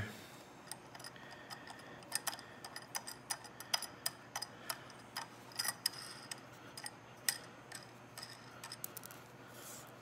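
Light, irregular metallic clicks and ticks from fitting and locking the handle into the base of an aluminum motorcycle lift jack.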